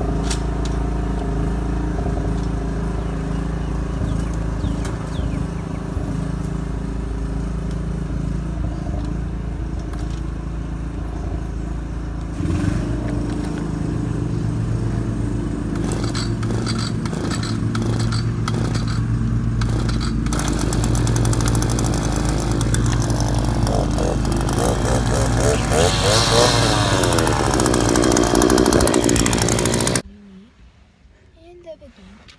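Cub Cadet riding mower engine running loudly at full throttle after a choked start, sounding like it is about to die. Its pitch and tone shift about twelve seconds in, with a run of clicks a few seconds later and a wavering sound near the end.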